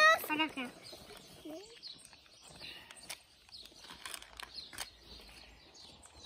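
Faint, scattered bird chirps in the background, with a few light clicks in between.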